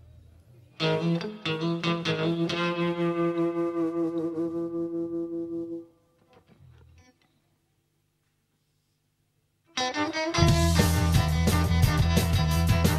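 A live rockabilly band's instrumental. An electric guitar opens alone with a ringing, rapidly repeated picked figure that cuts off suddenly about halfway through. After about three seconds of silence, drums, bass and guitar come in together, loud.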